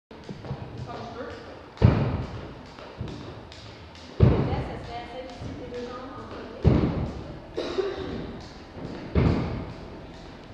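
Four heavy thuds echoing through a large gym, about two and a half seconds apart, with people talking in the background.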